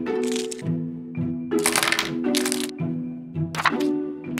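Stiff plastic blister packaging crackling in several short bursts as it is pulled open, over light background music.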